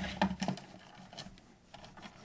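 Faint scuffing of a paper towel wiping the black plastic case of a portable CD player, with a few light scrapes in the first half-second, then quieter.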